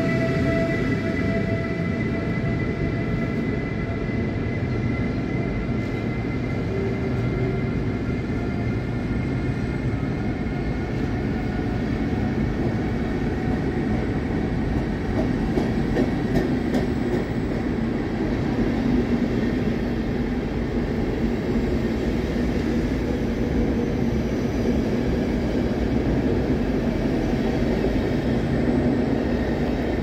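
Passenger coaches of a departing locomotive-hauled train rolling slowly past: a steady rumble of wheels on rails under a station hall. An electric whine from the locomotive fades away over roughly the first ten seconds, and a few faint clicks come near the middle.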